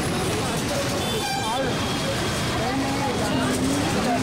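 Busy city street traffic: motorcycles and rickshaws passing, with voices all around. Vehicle horns toot, one of them held for about a second near the end.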